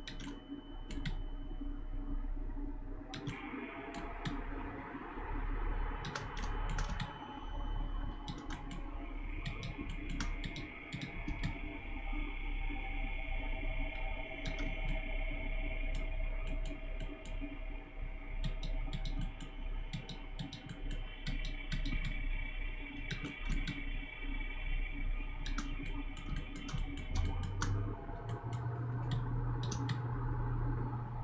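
Computer mouse clicks and keyboard key presses, irregular and often in quick clusters, during mouse-driven sculpting in Blender, over a steady low hum.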